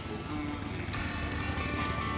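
Live band music from an outdoor concert PA, heard from down the street: an instrumental stretch between sung lines, with sustained chords over a low rumble.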